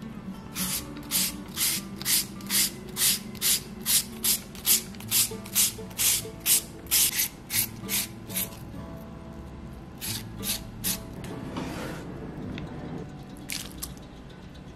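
Raw peeled potato rubbed across a handheld julienne grater: a rasping scrape about twice a second for roughly eight seconds, then a few slower strokes near the end.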